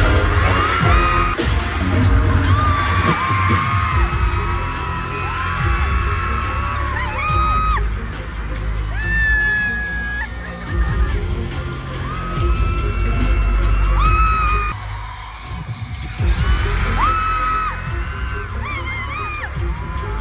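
Loud concert PA music with heavy bass hits, with fans screaming over it in long, high-pitched screams. The music drops away briefly about fifteen seconds in, then comes back.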